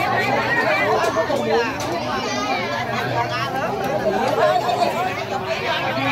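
Chatter of a packed crowd, many voices talking over one another close around, with a low steady hum underneath.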